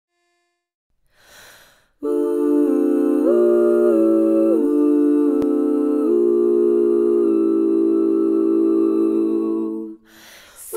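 Women's barbershop quartet voices humming in close four-part harmony: a slow string of sustained chords, changing about every second and a half, as the rubato introduction to the song.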